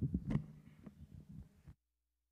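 A run of irregular low thuds and knocks, then the sound cuts off abruptly to dead silence near the end.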